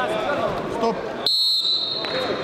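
Voices in the hall, then about a second and a quarter in a referee's whistle blows one sharp, high note that fades out within the second, stopping the bout as it ends by technical fall.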